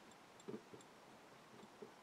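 Near silence: room tone with a few faint light clicks, one about half a second in and another near the end.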